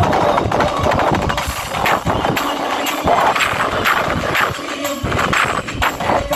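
Live folk music through a stage sound system, carried by dense, rapid percussion strokes, with the singing mostly dropping out in this stretch.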